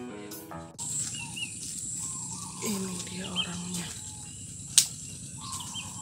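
The last notes of acoustic background music fade out within the first second. Then there is quiet ambience with a steady thin high-pitched whine and faint short chirps. A brief faint voice comes about three seconds in, and a single sharp click near five seconds.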